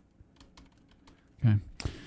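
Faint, scattered clicking of a computer keyboard and mouse, with one sharper click near the end.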